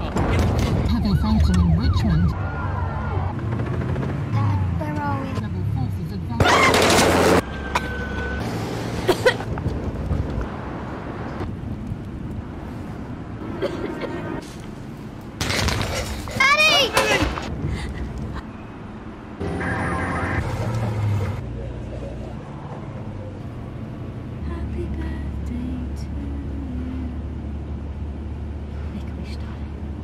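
Dramatic advert soundtrack of a country at war: voices with sirens and several loud sudden sounds, the loudest about seven, sixteen and twenty seconds in, ending over a steady low hum.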